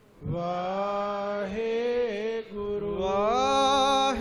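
A man chanting a Sikh devotional line in long, held notes, with a short break for breath just after the start and the pitch climbing about three seconds in.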